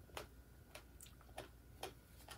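Faint, irregular mouth clicks of someone chewing food, about five in two seconds.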